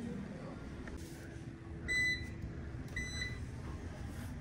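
Two short electronic beeps from a commercial top-loading washing machine's control panel, the first about halfway through and a shorter one about a second later, over a faint hum.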